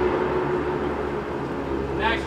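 A steady machine drone: a low hum and a steady mid-pitched tone under an even hiss.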